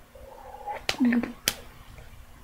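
A young child's short wordless vocal sound about halfway through, with a sharp click just before it and another just after.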